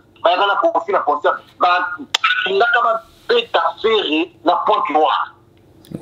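Speech only: a person talking rapidly in short phrases, the voice thin and narrow, as over a telephone line.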